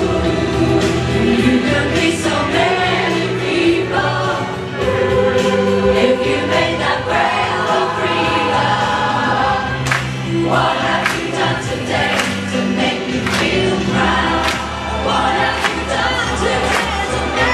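A large mixed-voice community choir singing a pop song in parts over a backing track, with a steady beat.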